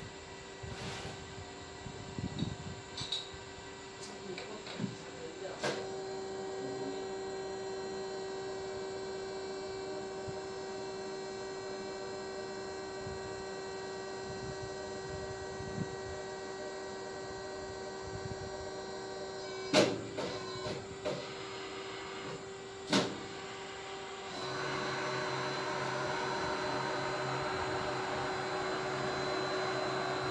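Hydraulic hose crimping machine running, its pump motor giving a steady hum of several tones. Two sharp metallic knocks come in the second half, and near the end the machine sound grows louder and rougher.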